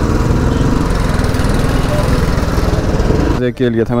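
Royal Enfield Standard 350's single-cylinder engine running with a steady, rapid low beat as the motorcycle rides. It cuts off abruptly about three and a half seconds in.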